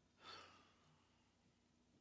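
Near-silent room tone with one brief, faint exhaled breath about a quarter second in.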